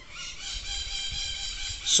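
A rooster crowing: one long call lasting about a second and a half.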